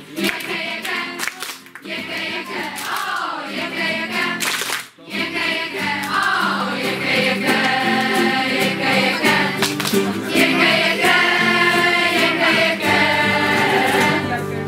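A group of young voices singing a song together in chorus, with a brief break about five seconds in.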